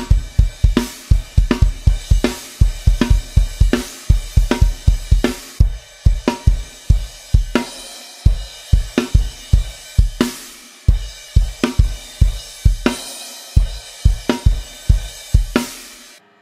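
Acoustic drum kit with Zildjian cymbals playing a triplet-feel rock groove: quick clusters of bass drum strokes under snare hits, with crash cymbal accents every few seconds.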